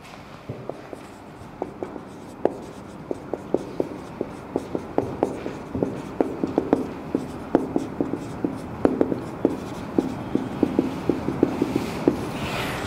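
Marker writing on a whiteboard: a quick, irregular run of short taps and strokes as words are written. It starts about half a second in and gets busier in the second half.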